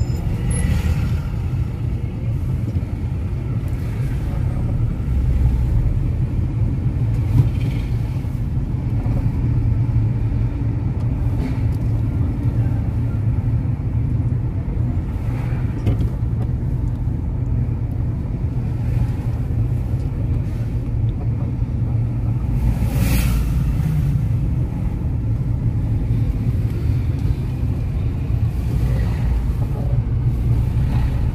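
Low, steady rumble of a car's engine and tyres heard from inside the cabin while driving slowly through city traffic. A short hiss cuts across it once, about three-quarters of the way through.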